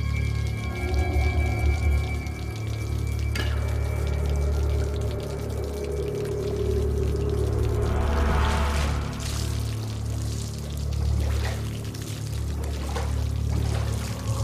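A low, droning film score runs throughout, with held high tones in the first few seconds. About eight seconds in, water sloshes and splashes in a full clawfoot bathtub as a hand reaches into it, with a few smaller water sounds after.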